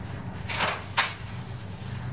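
A cloth shop rag rubbing over a small metal carburetor part being wiped clean: two short swishes, about half a second and a second in, the second sharper. A steady low hum sits underneath.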